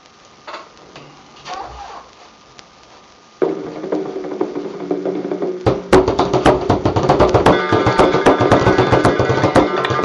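Quiet for about three seconds, then an Irish traditional tune starts playing from a recording; a couple of seconds later a bodhran (Irish frame drum) joins in with rapid, steady strokes in time with the tune.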